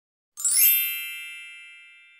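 An intro-logo chime sound effect: a single bright ding of several high tones sounding together, starting about a third of a second in and ringing out slowly, fading away by the end.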